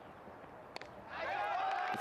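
A single sharp crack of a cricket bat striking the ball a little under a second in, against quiet outdoor ambience. Voices then rise toward the end.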